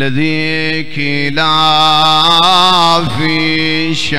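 A man's voice chanting the Arabic opening of a sermon in long, drawn-out held notes with a wavering ornament, broken by short pauses about a second in and about three seconds in.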